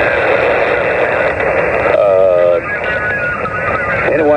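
Xiegu G90 HF transceiver's speaker on 40-meter lower sideband: steady band-noise hiss cut off sharply above and below the voice range, with a weak station's voice coming through it about halfway.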